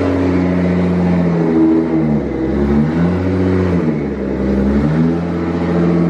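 A high-performance car engine revving hard in repeated surges, its pitch climbing and dropping several times, as the car does a smoky burnout with the rear tyres spinning on the concrete.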